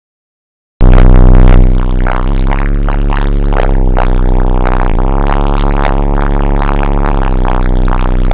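Bass-heavy music played very loud through a truck's car audio system, four Ascendant Audio Mayhem 18-inch subwoofers on about 10,000 watts, heard from inside the cab. It starts suddenly just under a second in, loudest in its first second.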